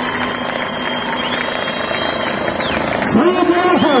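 Steady open-air noise with a faint hum for about three seconds, then a man's voice starts speaking, rising and falling in pitch.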